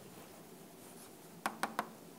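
Chalk writing on a blackboard: faint scraping, then three sharp chalk taps in quick succession about one and a half seconds in.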